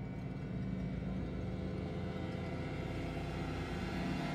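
Intro soundtrack: a low sustained drone with held tones under a rumbling swell that builds and peaks near the end.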